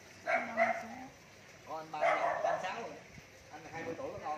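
Dogs barking in short bouts, one just after the start and a longer one about two seconds in.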